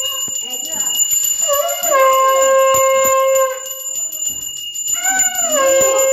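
A conch shell (shankh) blown in two long notes, each bending in pitch before settling into a steady held tone; the second begins near the end. Voices talk between the blasts.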